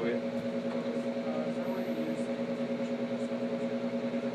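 A steady two-note electrical hum with faint, indistinct voices murmuring in the room.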